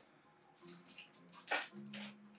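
Faint background music with low sustained notes, and a single short rustle about one and a half seconds in.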